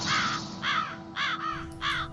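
A bird calls four times, about every half second. Each call is a short squawk that rises and falls in pitch, over a faint steady low hum.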